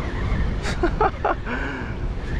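Wind buffeting the microphone as a steady low rumble, with a few short voice sounds in the middle.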